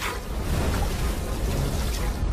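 Cartoon sound effect of rough, rushing sea water: a steady wash of splashing, churning noise.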